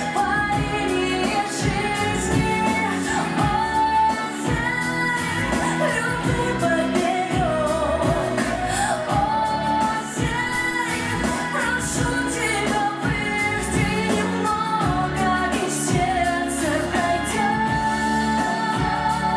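A woman singing a pop song live into a handheld microphone over pop accompaniment with a steady beat.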